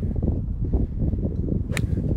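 A golf club strikes a golf ball once near the end, a single sharp click, on a low 'sniper' punch shot. A steady low wind rumble on the microphone runs underneath.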